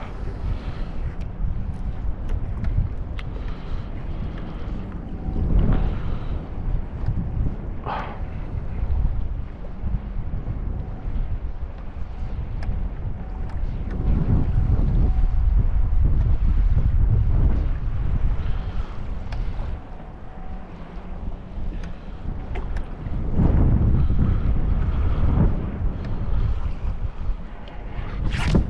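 Wind buffeting the microphone in gusts over choppy open lake water lapping around a small boat, with one brief click about eight seconds in.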